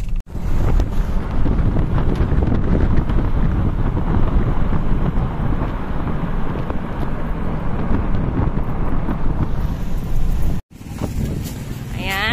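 Wind buffeting the microphone in a moving car, a loud, rough rush over the car's road noise. It breaks off suddenly near the end, leaving quieter street noise.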